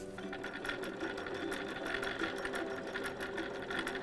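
Necchi electric sewing machine running steadily, its needle rapidly stitching a seam along the edge of the fabric.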